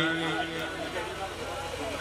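A man's voice over a public-address system trails off at the end of a drawn-out word, then faint background chatter of people.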